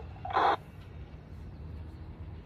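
FM squelch tail from a TCA PRC-152 handheld radio's speaker: a short burst of static about half a second in as the distant station stops transmitting, followed by low steady background hiss.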